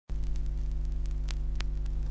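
Steady low electrical mains hum in the recording, with two faint clicks in the second half.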